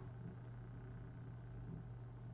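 Quiet room tone in a pause between spoken sentences, with a faint steady low hum.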